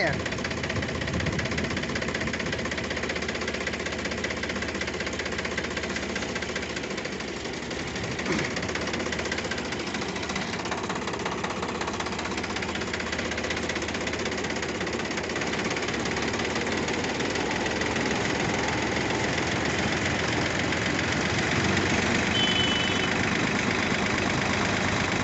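Sonalika tractor's diesel engine running steadily while it drives a Gobind thresher through the PTO, the thresher's drum and fans turning with it. The sound grows a little louder near the end.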